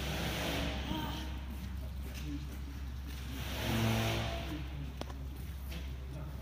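A machine's motor on a building site swelling and fading twice, the second time louder, over a steady low hum.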